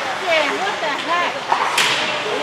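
Ice hockey rink during play: short shouted calls from players over the scrape and hiss of skates, with one sharp crack near the end from a stick or puck strike.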